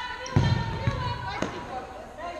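Futsal ball striking the hall floor and being kicked: one heavy thump about a third of a second in, then two lighter knocks around one second and one and a half seconds in.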